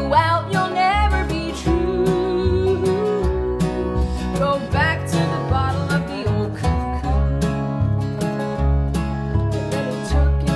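Acoustic band music in a country or bluegrass style: guitar and a plucked upright bass, with a wavering melody line above them.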